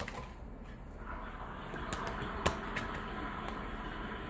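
Tarot cards being shuffled by hand: a soft, steady rustle with a few light clicks of cards knocking together.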